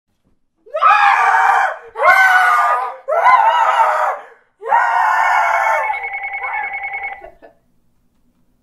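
Two people screaming in fright: four long, high screams, the last one the longest. Over the end of the last scream a telephone rings with a rapid pulsing trill.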